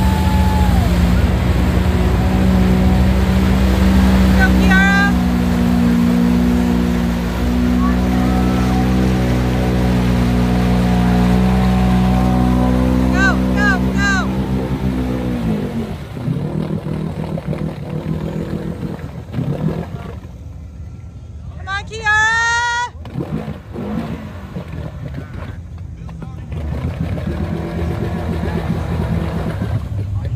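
A side-by-side's engine held at high, steady revs as it churns through a deep mud hole, then winding down about fifteen seconds in as the machine bogs down and stops. Spectators give short whistles and calls from the bank, the loudest a little past the twenty-second mark.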